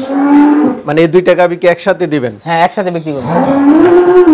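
Holstein Friesian dairy cows mooing: a short steady call at the start, then a long moo near the end that rises and falls in pitch.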